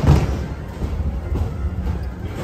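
Fireworks show music over a steady low rumble, with a firework bang dying away just as it begins.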